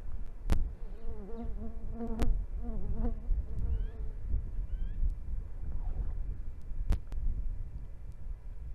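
An insect buzzing for about two seconds, starting about a second in and wavering slightly in pitch, over a steady low rumble. Three sharp clicks stand out as the loudest sounds.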